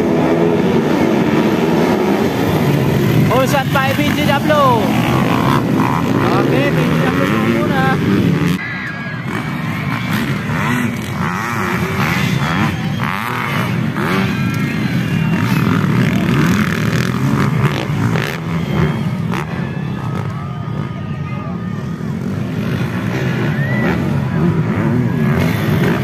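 Several motocross dirt-bike engines revving and racing together, their pitch rising and falling as the riders accelerate and shift. The sound drops suddenly in level about eight seconds in and carries on quieter, with voices mixed in.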